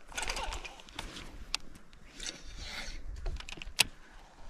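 Handling of a baitcasting rod and reel: rustling with a few sharp clicks, the loudest just before the end, as the reel is worked and readied for a cast.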